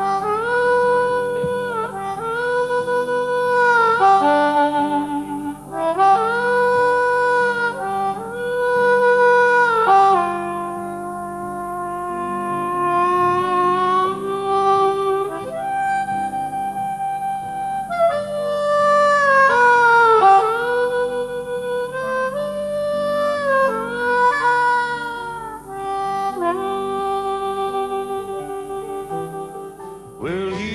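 Harmonica playing a slow, mournful melody with long held notes, some bent down and back up, over a soft sustained low accompaniment.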